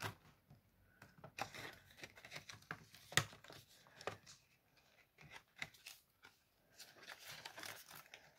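Faint crinkling and rustling of clear plastic binder sleeves and prop banknotes being handled and slid into a ring-binder cash planner, with scattered light clicks and taps; the sharpest crackle comes a little over three seconds in.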